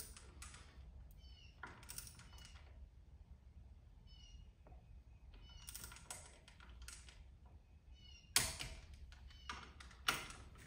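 Torque wrench ratcheting on a supercharger plate bolt in short runs of clicks. About eight seconds in comes one sharper, louder click, the wrench breaking over at its 100 inch-pound setting.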